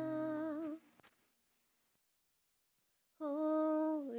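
Unaccompanied singing voice holding a long, steady note that ends under a second in. About two seconds of dead silence follow, then a new held note begins near the end.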